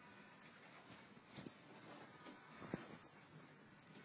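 Near silence: faint room tone with two soft clicks, about one and a half and two and three-quarter seconds in.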